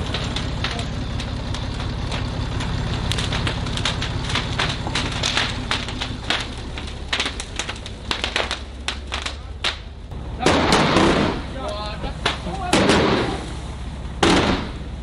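A load of fireworks going off inside a burning bus: a dense run of sharp crackling pops over a steady low rumble, then two louder, longer bursts near the end.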